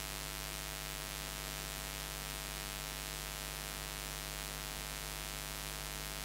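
Steady electrical hiss with a low mains hum and its overtones, unchanging throughout: noise from an idle sound system or recording line.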